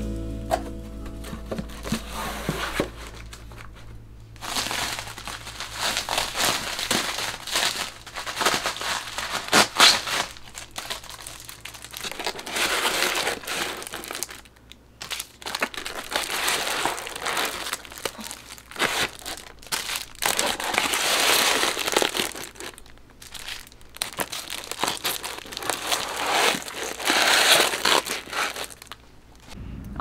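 Plastic sleeves and packaging crinkling and rustling as sticker books are handled and slotted onto a shelf, in stretches of a few seconds with short pauses, with small sharp clicks and taps mixed in.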